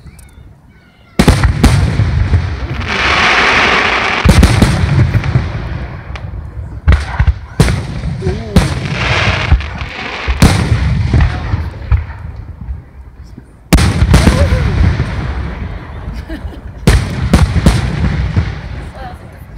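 Aerial firework shells bursting overhead: a series of loud bangs, each trailing into a low rumbling echo, starting about a second in after a quiet moment and coming every few seconds, with a stretch of hissing between the second and fourth seconds.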